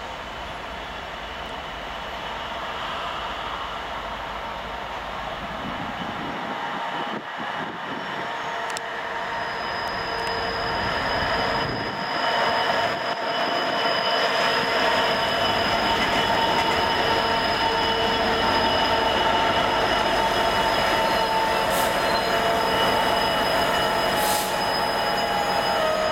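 Class 66 diesel locomotive with its EMD two-stroke V12 engine, hauling a container train past and growing louder as it approaches over about the first fifteen seconds. The wheels squeal in several steady high tones as the train runs over the curving track.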